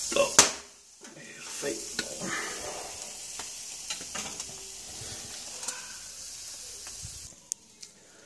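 Fish and vegetables sizzling on a wire grill over glowing embers: a steady hiss with scattered crackles and clicks. There is a sharp click about half a second in.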